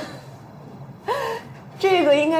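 A woman's brief wordless exclamations, gasp-like: a short one right at the start and another about a second in, before she begins speaking near the end.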